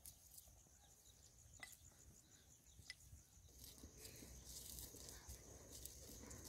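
Near silence with faint crunching footsteps on dry stubble and stony ground, a little louder from about four seconds in, over a faint steady high insect chirring.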